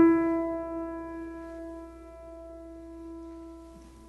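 1936 Steinway Model M grand piano: a single mid-range note struck once as the sound begins, then left to ring, fading slowly and still sounding at the end.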